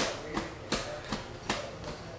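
Hands patting on bare thighs in an even rhythm, about three light pats a second, as the hands flip over and back in a rapid alternating movement test for dysdiadochokinesis.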